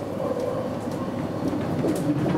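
Intercity train running on the track, heard from inside the driver's cab: a steady rumble of wheels on rails, with a thin whine that fades out about halfway through.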